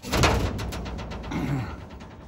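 A sheet-metal body panel dropping onto a steel tube frame: a sudden loud crash with clattering rattles that die away over about a second.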